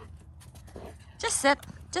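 Scattered crunching steps in snow, short crisp clicks at uneven spacing, with a brief voice sound about a second and a quarter in.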